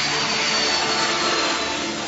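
Jet aircraft noise: a loud, even rushing sound with a faint whine that falls slowly in pitch, as of a jet passing.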